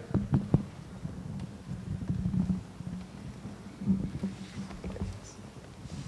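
Microphone handling noise as the handheld mic is passed to an audience member: a few sharp knocks in the first half second, then low rumbling and bumps, over a steady low hum from the sound system.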